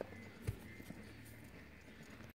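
Faint hoofbeats of a horse moving over soft arena dirt: a few dull thuds, the clearest about half a second in.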